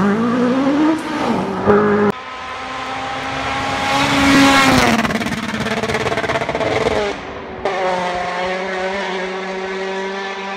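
Rally car engines revving and running hard in a string of spliced clips, with abrupt cuts about two seconds in and again near the eight-second mark. Around four to five seconds in, an engine's pitch climbs and then drops away.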